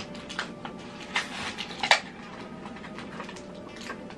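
Plastic blister packaging of trading-card packs being handled and pulled open: a few sharp crinkles and clicks in the first two seconds, then quieter rustling.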